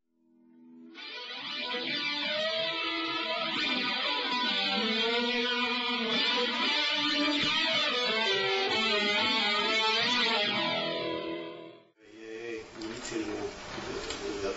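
Guitar music with plucked, ringing notes, fading in just after the start and fading out about twelve seconds in.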